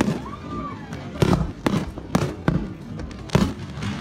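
Aerial fireworks shells bursting in a string of irregular, separate bangs over a continuous low rumble.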